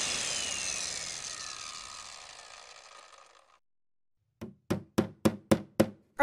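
Construction noise: a power tool whine that falls in pitch and fades out over the first three seconds, a short silence, then a quick run of about six hammer blows, roughly four a second.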